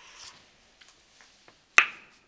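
A few faint ticks, then one sharp click near the end: a small china coffee cup knocking against its saucer.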